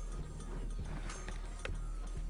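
Faint background music over the steady hum of a studio room, with one soft knock near the end.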